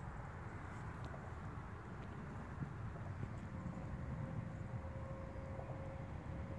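Faint outdoor background noise: a steady low rumble, with a faint steady hum coming in about halfway through.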